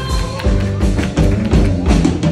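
Live band playing: a held note ends about half a second in, then the drum kit plays a quick, busy pattern over bass and keyboard.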